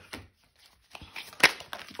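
Tarot cards being handled on a cloth-covered table: soft taps and slides as cards are laid down and drawn from the deck, with one sharp card snap about a second and a half in.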